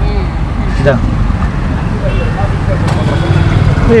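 Steady rumble of street traffic, with faint voices in the background.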